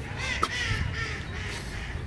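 A bird giving harsh, cawing calls in the first second, with a sharp click about half a second in, over a steady low rumble.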